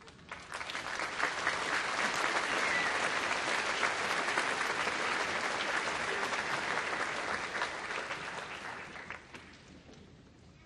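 Audience applauding. It swells about half a second in, holds steady, and dies away near the end.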